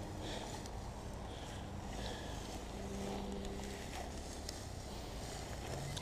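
Faint rustling of dry grass as a metal detector's search coil is swept through it, with a faint steady low hum underneath.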